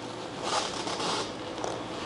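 A brief rasping scrape, starting about half a second in and lasting under a second, amid light handling noise as hands work inside a 3D printer's frame.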